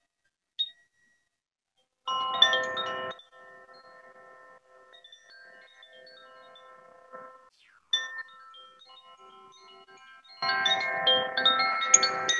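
A handheld cylindrical tube chime is tipped and shaken, and its tuned rods ring out in a loud cluster of bright notes about two seconds in. Scattered notes keep ringing and fade, there is a brief stir near eight seconds, and a second, louder round of chiming comes from about ten and a half seconds. The chime is sounded to bring the yoga nidra practice to a close.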